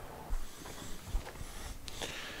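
Quiet background noise with a few faint short clicks, and no clear source standing out.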